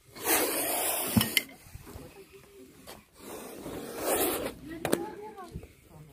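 A cobra hissing in two long forceful breaths, each lasting about a second and a half, the second about three seconds after the first. A few sharp clicks sound near the first hiss and a second after the second.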